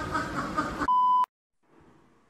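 A short, steady electronic beep at one high pitch, lasting under half a second, cuts off voices just under a second in. It is followed by a brief gap of silence and faint room sound.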